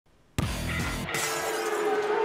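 A music sting with a crash like shattering glass, starting suddenly about a third of a second in, followed by a held tone that slides slowly down in pitch.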